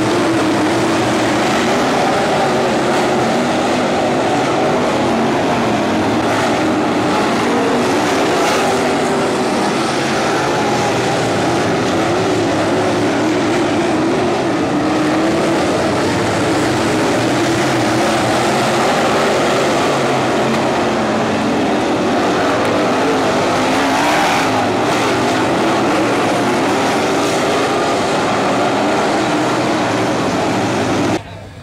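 Dirt-track race car engines running at racing speed as a field of cars laps the oval. Their pitch rises and falls continuously as they pass and lift through the turns.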